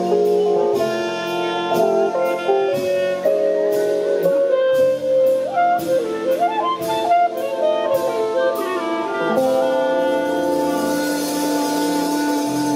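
Live swing combo playing the instrumental close of a slow ballad: a clarinet carries the melody over drums with regular cymbal strokes and sustained band chords. About nine seconds in, the band settles on a long held final chord, with a cymbal wash swelling near the end.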